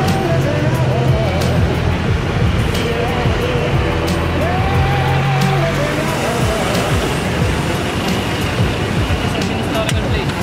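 Background music with a melodic line, laid over the steady noise of city street traffic.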